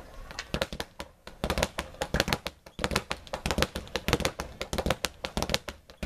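Speed bag worked with the double punch, both fists hitting together: the bag is driven into its platform and rebounds in a fast rattle of hits. The rattle breaks off briefly about a second in and again near three seconds.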